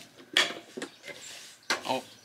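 Hard parts and packaging being handled while unpacking a welder's accessories: a couple of sharp clacks in the first second, then a short clatter with a brief vocal sound near the end.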